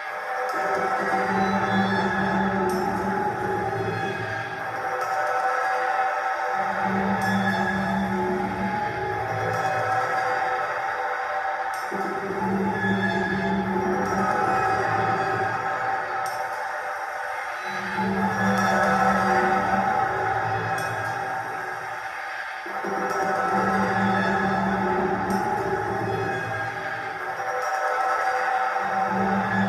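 Electronic ambient drone music: layered sustained tones hold steady while a low droning layer sounds in blocks of five to six seconds, dropping out briefly between them.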